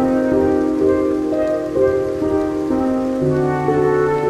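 Slow classical instrumental music, held notes changing pitch every second or so, laid over steady rainfall.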